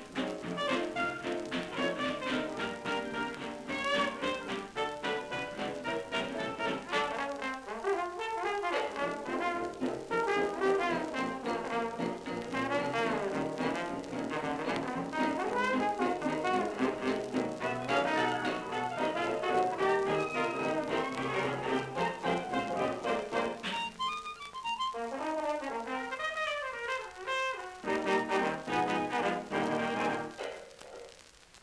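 A 1927 Victor 78 rpm shellac record of a New Orleans jazz band playing, with cornet, trombone and clarinet leading the ensemble. A fine crackle of surface noise from the old disc runs under the music.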